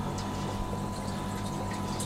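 Aquarium equipment in a fish room: steady water movement and running pump noise with a constant low hum and no distinct splashes or knocks.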